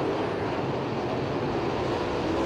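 A pack of 410 winged sprint cars running together on a dirt oval, their engines blending into one steady din, with a faint engine tone coming through in the second half.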